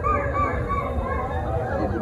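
Many choir voices making overlapping short calls that rise and fall in pitch, imitating jungle birds and animals, over a low held note.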